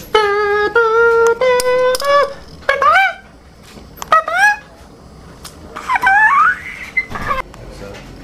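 A voice singing a few high held notes that step upward in pitch, followed by short upward swooping whoops and a longer wavering slide.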